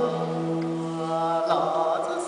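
Saxophone and guitar playing live, with long held notes in a slow, chant-like line; the held low note changes near the end.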